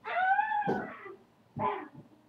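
A pet animal calls twice: a long call whose pitch rises and then falls over nearly a second, then a short second call just before the end.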